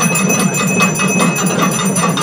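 Puja bells ringing rapidly and continuously during temple worship, over a loud, dense din.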